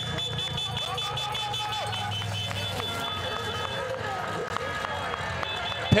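Trackside race ambience: distant voices and faint music holding a steady level, with thin held tones and a low hum underneath.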